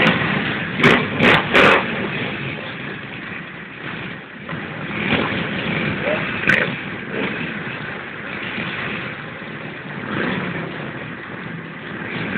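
A large crowd of motorcycles running in a square, engines idling and revving at random, with three loud short bursts close together about a second in and another around the middle.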